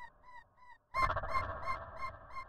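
Dubstep track: a fast run of short, repeated synth notes with a nasal, honking tone. It fades and cuts out briefly just before a second in, then comes back loud over sub bass.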